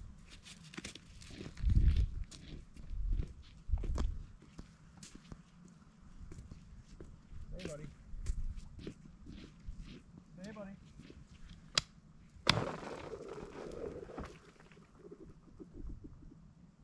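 Footsteps on snow-covered pond ice, with scattered crunches and clicks and a few dull thumps early on. A sharp knock on the ice about twelve seconds in rings on for a moment.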